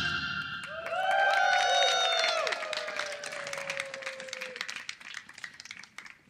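Applause and calls right after a song ends. Several voices call out about a second in, one long call sliding slowly down in pitch, while the clapping thins out and fades.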